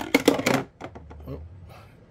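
Hard plastic clicks and knocks from a hard-shell case's latch being handled: a quick cluster in the first half second, then a few fainter ticks before it goes still.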